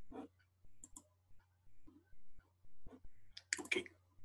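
A few sharp computer mouse clicks while browser tabs are being switched, over a faint steady low hum, with a quick cluster of clicks near the end.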